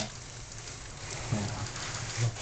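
Model passenger train running around its track: a steady, even noise. A person's voice makes a couple of short sounds in the second half.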